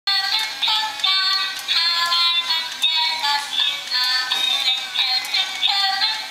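Battery-powered toy caterpillar playing a thin, tinny electronic melody of short stepped notes through its small speaker.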